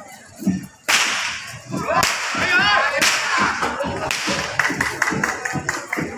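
Whip cracking: three loud, sharp cracks about a second apart, the first about a second in, with voices around them.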